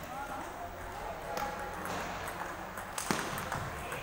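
Table tennis ball clicking off paddles and the table during a rally, several sharp clicks with the loudest about three seconds in, ringing in a large hall over a murmur of voices.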